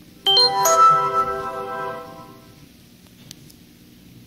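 A short chime of three quick notes, struck about a third of a second in, ringing out and fading over about two seconds.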